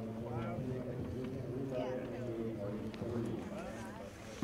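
Several men talking indistinctly, with a few faint light clicks.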